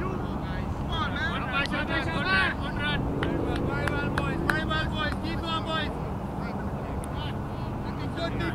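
Voices of cricket players calling and talking across the field, the words unclear, over a steady low rumble.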